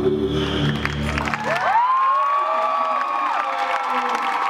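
Dance music with a heavy bass ends abruptly a little under two seconds in, and an audience cheers and applauds, with one long high cheer rising, held and falling away.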